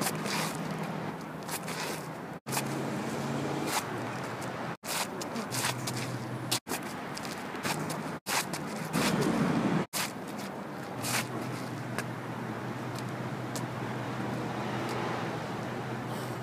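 Sneakers scuffing and stepping on asphalt during disc golf throwing run-ups, over a faint steady hum like distant traffic. The sound cuts out abruptly every couple of seconds, where short clips are spliced together.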